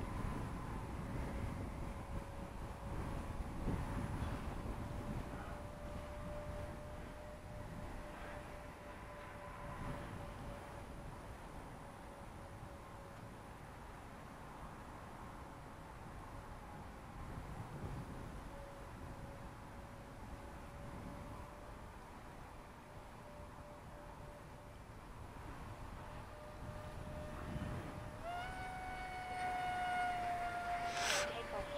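Twin 70 mm electric ducted fans of a model F-22 jet in flight, a thin steady whine at a distance over wind rumble on the microphone. Near the end the whine grows louder and higher, then sags slightly in pitch as the jet comes by.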